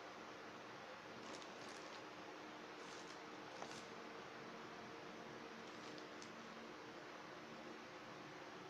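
Near silence: room tone with a faint steady hum and a few faint, brief rustles.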